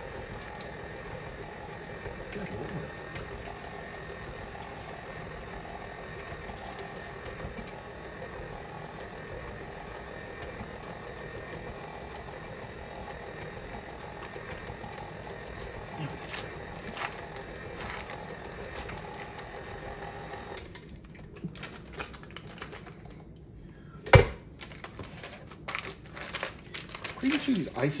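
KitchenAid tilt-head stand mixer running steadily, its flat beater working butter and cream cheese for icing. The motor stops about three quarters of the way through, then comes one sharp knock and a few lighter clicks and scrapes as a spatula works the bowl.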